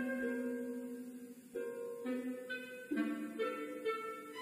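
Symphony orchestra playing a slow passage: held notes fade to a brief lull about one and a half seconds in, then new chords enter one after another.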